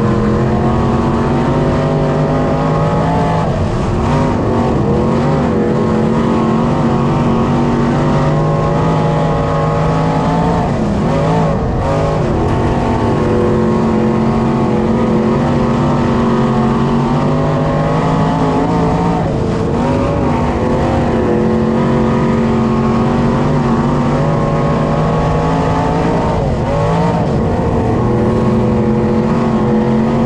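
B-Modified dirt-track race car's V8 engine running hard, heard from inside the cockpit. The revs dip and climb back about every seven to eight seconds as the car goes round the oval.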